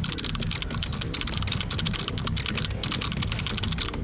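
Typing sound effect: a fast, unbroken run of key clicks as on-screen text is typed out letter by letter, over a low steady rumble.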